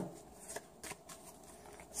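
A tarot deck being shuffled and handled in the hand: a few faint, short card flicks.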